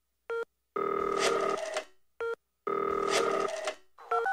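Telephone sounds opening an electronic track: a short beep, then a ring about a second long, then another short beep and a second ring.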